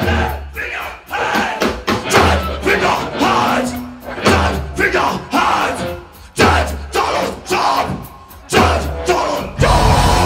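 Loud metal band playing live: heavy guitar, bass and drum hits land about every two seconds with short drops between them, under shouted vocals and crowd yells.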